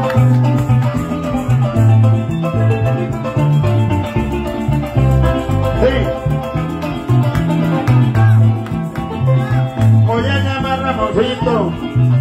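Live llanero joropo band playing an instrumental passage: harp melody over a stepping electric bass line.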